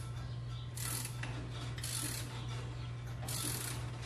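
A ratchet clicking in three short strokes, about a second to a second and a half apart, as it turns the forcing screw of a Powerbuilt strut spring compressor to compress a coil spring on a strut. A steady low hum runs underneath.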